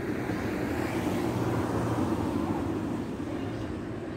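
A motor vehicle's low engine rumble, swelling a little and then easing off toward the end.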